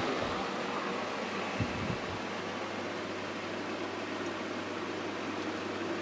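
Greenhouse circulation fan running steadily at a high setting, a constant rushing of air. It is turned up to 'gale force' on setting three, above its usual one, to keep air moving over the leaves and cool them in strong sun.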